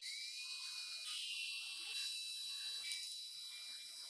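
Cordless drill running, driving self-tapping screws through a speaker's mounting ring into the ceiling: a steady high motor whine that rises in pitch as it spins up, then shifts about a second in and again near three seconds.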